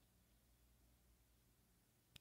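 Near silence: faint low hum and hiss of the recording.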